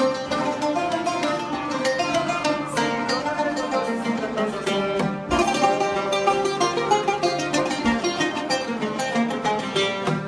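Oud music: a plucked melody of quick notes that runs on with a short break a little after five seconds.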